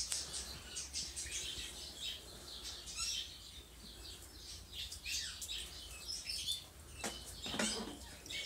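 Small birds chirping repeatedly in the background, with many short high chirps and a few quick falling notes.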